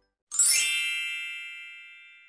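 A bright chime rings out once, starting suddenly about a third of a second in. It rings with many high tones and fades away steadily.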